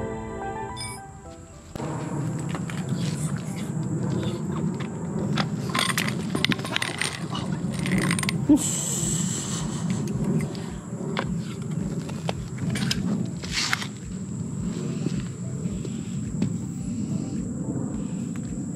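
A short stretch of music that cuts off after about a second and a half, then work sounds at a pool-cover deck anchor: scattered metal clinks, knocks and a brief scrape from a steel install rod and spring strap, over a steady low rumble.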